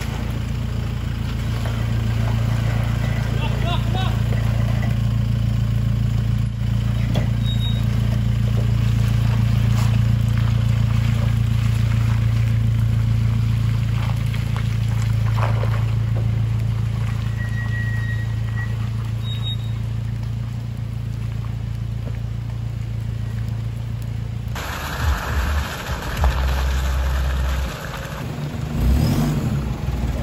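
Toyota Hilux pickup engine running steadily at low revs, a constant low drone, as the truck crawls over a steep, muddy, rocky off-road trail. About 25 seconds in, the sound changes abruptly to a choppier mix with low thuds.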